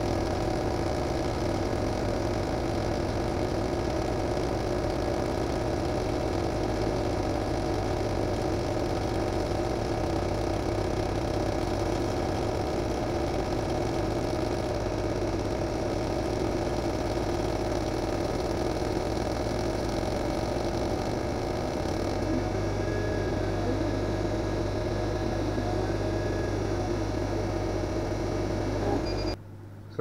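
Small 50 W CO2 laser cutter running a job, engraving and cutting out a logo in 6 mm MDF: a steady mechanical hum from the machine and its fume extractor, with a deeper hum coming up about two-thirds of the way in. The sound cuts off suddenly about a second before the end.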